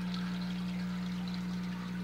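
Aquarium aeration: a steady hum with the even bubbling water noise of an airstone in the tank.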